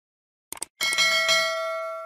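Two quick mouse-style clicks, then a bright bell chime struck twice that rings on and slowly fades. This is the sound effect of a YouTube subscribe-and-notification-bell animation.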